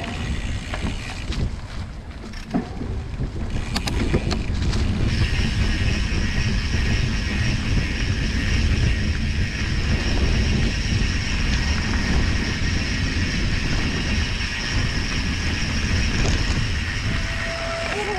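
Mountain bike riding along a leaf-covered dirt trail: a steady low rumble of wind on the microphone and tyres over the rough ground, with a few sharp rattles about four seconds in and a steady high hiss that comes in about five seconds in.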